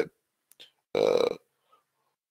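A man's short voiced hesitation sound, a held 'eh', about a second in, set in silence; a faint mouth click comes just before it.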